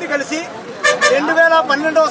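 A man speaking in Telugu into a microphone, with road traffic behind him.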